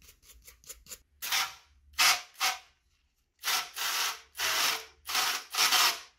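Small wire brush scrubbing deposits off a metal tap handle in quick short strokes, then, from about halfway, a handheld sprayer squirting water over it in about five short hissing bursts.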